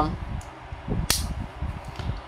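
Stiff plastic side-release buckle of a running waist belt being worked by hand. It snaps together with one sharp click about a second in, amid faint handling rustle.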